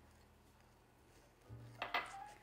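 Quiet room tone, then near the end a small glass cup is set down on a granite countertop with a couple of short clinks.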